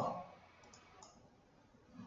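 A couple of faint computer mouse clicks about a second in, over quiet room tone.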